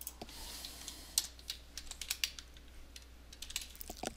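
Computer keyboard typing: about ten light, irregular keystrokes as a text caption is edited, over a low steady hum.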